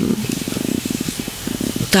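A person's drawn-out hesitation hum, 'mmm', in a low, creaky vocal fry, lasting almost two seconds.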